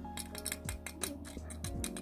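Light clicks and taps of a small 1/64 diecast model van with a metal base being turned over and handled in the fingers, over faint background music.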